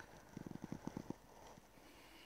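A rapid run of about ten faint, light taps or clicks lasting under a second, starting about a third of a second in.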